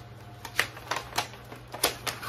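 A paper envelope being handled and pulled out of a shipping box: several sharp, irregularly spaced crinkles and snaps of stiff paper.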